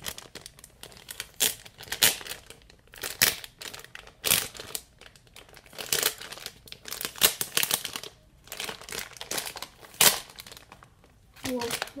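A plastic packaging bag crinkling and tearing as it is pulled open by hand, in irregular crackly bursts.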